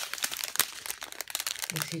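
Thin clear plastic bags of diamond painting drills crinkling as they are handled, a dense run of small crackles.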